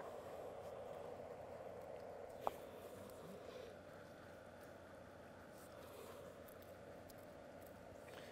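Quiet, with a single sharp snip about two and a half seconds in: hand clippers cutting a short length off black drip irrigation tubing.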